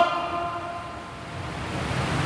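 A pause in a man's speech: his last word fades away with room echo over about half a second, leaving only a faint low rumble of room noise.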